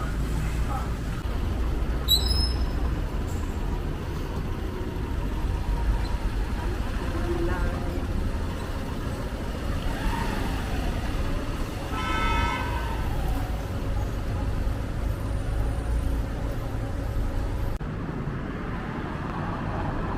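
Street traffic: a steady rumble of passing vehicles, with a horn sounding briefly about twelve seconds in.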